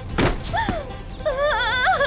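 Dramatic background score with a wavering vocal line, broken about a quarter of a second in by a single sudden thud.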